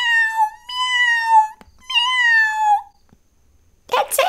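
A woman imitating a cat: three high, drawn-out meows in a row, each sliding down in pitch at the end.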